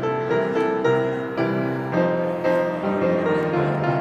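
Piano playing a slow hymn tune in chords, with new notes struck about every half second.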